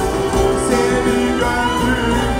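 Live band music with a clarinet playing a solo melody, sustained bending notes over drums and the band.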